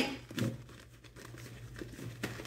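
A deck of tarot cards shuffled by hand: soft, irregular papery sliding and flicking of the cards, with a slightly louder rustle about half a second in.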